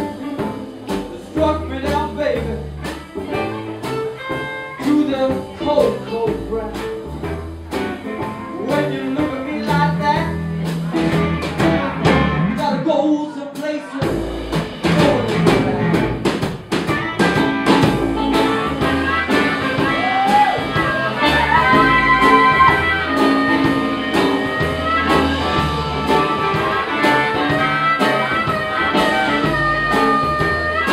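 Live blues band playing: upright double bass, drum kit, archtop guitar and saxophones. The band drops out briefly about halfway through, then comes back in with long held notes over the rhythm.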